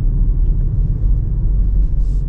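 Steady low rumble of road and tyre noise inside a car's cabin while driving through town at about 30–35 km/h.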